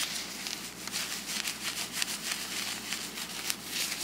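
An isopropyl alcohol wipe rubbing across a laptop GPU die in quick, repeated strokes, scrubbing off old dried thermal compound residue.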